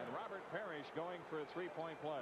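Quiet male speech: the television commentator of an old basketball game broadcast talking over faint arena background noise.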